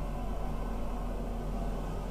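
A steady low hum with a faint even hiss, unchanging throughout.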